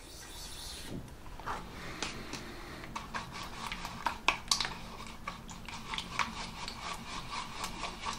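A paintbrush stirring watered-down PVA glue in a plastic tub, its bristles scraping and knocking against the tub's sides in quick, irregular strokes.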